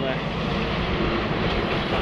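Steady rumble of road traffic passing over the bridge, with no rise or fall in level.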